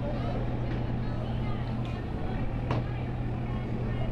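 A steady low engine hum, with faint distant voices and a single sharp click a little under three seconds in.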